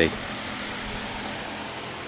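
Steady, even background hiss with no distinct sounds in it: room tone.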